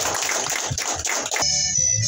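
Guests applauding, which gives way abruptly about a second and a half in to music with steady held tones.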